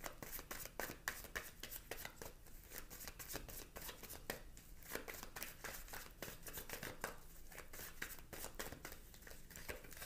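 Tarot cards being shuffled by hand, a faint, continuous run of soft, irregular card clicks.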